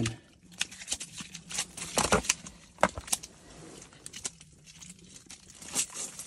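Scattered light clicks, scuffs and crinkles from handling a caught trout on bare ice, with a dull knock about two seconds in.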